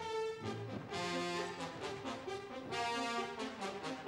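Orchestral ballet music with the brass section to the fore, playing short, accented chords.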